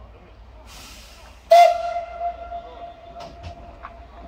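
Steam locomotive whistle: a short hiss of steam, then a sudden loud blast on one steady pitch that quickly drops back and holds on more softly. A few sharp clicks near the end.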